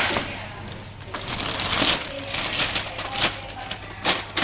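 Thin clear plastic bag crinkling and rustling as hands pull it off a printer, in uneven bouts that are loudest near the start and again about two seconds in.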